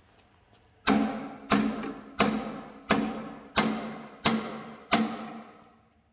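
Seven hammer blows on the cast-iron front gear cover of a 1936 Caterpillar RD-4 engine, evenly spaced about 0.7 s apart. Each blow rings and dies away. They are knocking the cover loose from its locating dowels.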